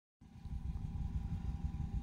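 Low, steady background rumble with a faint steady hum, starting just after the very beginning.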